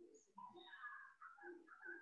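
Near silence with faint bird calls in the background, starting about half a second in.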